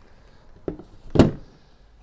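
A car amplifier set down on a plastic work table: a light tap, then one solid thunk a little past a second in.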